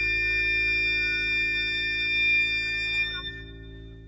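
Chamber trio of flute, clarinet and piano holding a still, sustained chord of steady tones, which fades away in the last second.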